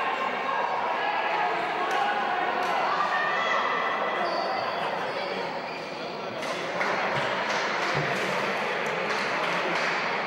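Crowd noise in a sports hall: many voices talking and calling at once, with scattered sharp knocks. The crowd grows louder about seven seconds in.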